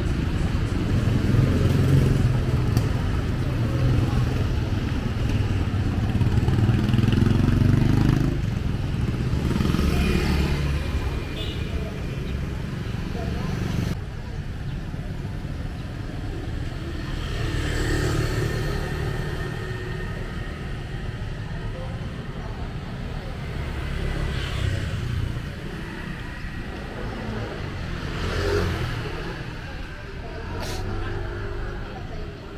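Street traffic passing close by: motorcycle and car engines, loudest in the first eight seconds, where one engine rises in pitch as it speeds up.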